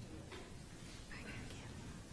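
Quiet room tone with faint, indistinct voices murmuring off-microphone.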